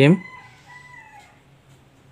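Faint, distant bird call: one held tone lasting about a second that drops in pitch at the end, over a low steady hum. A man's voice trails off at the very start.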